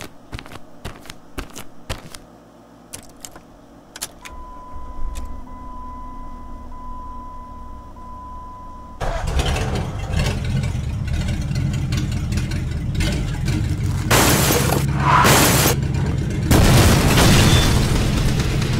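A car engine starting suddenly about halfway through and running, swelling louder twice near the end. Before it, a steady high chime sounds in pulses with short breaks, and sharp clicks are scattered through the first few seconds.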